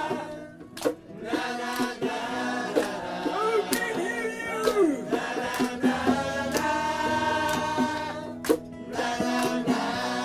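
Live acoustic rock band playing: acoustic guitar strumming, sharp hand-percussion hits, and singing. The sound briefly drops away about a second in and again near the end, between phrases.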